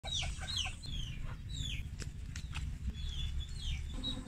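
Chickens and chicks calling as they feed: repeated high, falling peeps, with a few short lower clucks in the first half second. A steady low rumble runs beneath, and there are a few sharp ticks about two to three seconds in.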